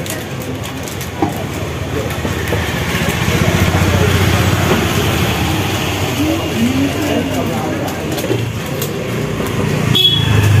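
Busy shop ambience: indistinct voices of people talking in the background over a steady low rumble, with a single sharp click about a second in.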